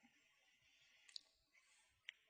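Near silence: room tone, with one faint, short click about a second in.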